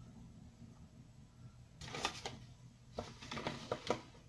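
Scooping flour from a paper flour bag with a measuring cup: quiet, short rustles and clicks of the paper bag and cup, a cluster about two seconds in and several more near the end, over a low steady hum.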